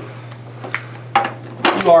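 A man speaking over a low, steady background hum, with a single small click just before he starts.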